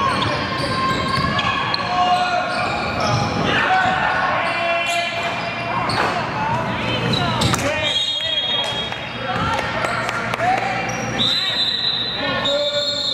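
A basketball being dribbled and sneakers squeaking on a gym's hardwood court, with voices ringing in the hall. Near the end a referee's whistle blows a steady high note.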